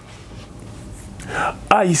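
A pause in a man's French speech: about a second of quiet room tone, then a soft breathy, whisper-like sound and his voice coming back in near the end.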